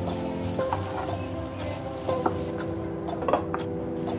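A wooden spatula stirring shredded chicken filling in a nonstick pan, with a light sizzle and a few sharp clicks as the spatula knocks the pan.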